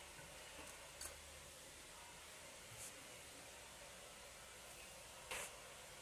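Near silence: faint room hiss with a few soft clicks, the clearest about five seconds in.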